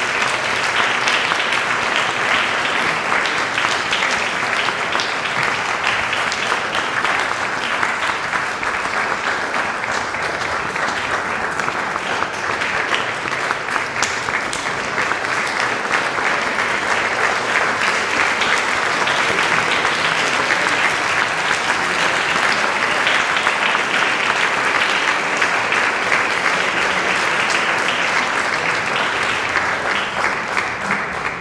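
Audience applauding steadily: dense clapping from a large crowd that holds at an even level.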